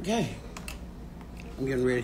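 A woman's voice: a short falling vocal sound, then a few light clicks, then she starts talking about one and a half seconds in.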